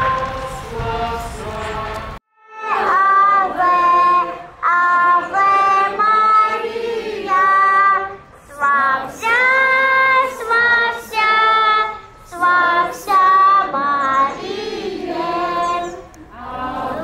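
Group of voices singing, with a passing car's low rumble under it; about two seconds in it cuts off abruptly, and after a brief silence a choir of high voices starts singing a song in short phrases with small breaks between them.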